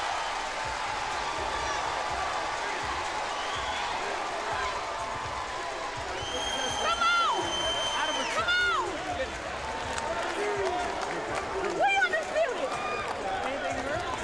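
Arena crowd cheering and shouting after the final bell of a boxing match, with loud individual shouts rising above the steady din. A long, steady high whistle sounds about six seconds in and lasts around two seconds.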